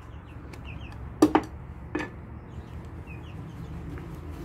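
Two or three sharp knocks, a small metal wax tin and brush being put down on a plywood workbench, about a second and two seconds in. Behind them, faint short bird calls keep recurring over a low steady hum.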